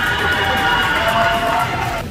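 Background music playing over the arena's PA, with held, drawn-out cheering from the audience that stops near the end.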